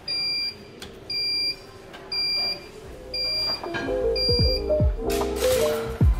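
Golden Malted waffle baker's timer beeping four times, about once a second: the countdown has run out and the waffle is done. Background music comes in after the beeps.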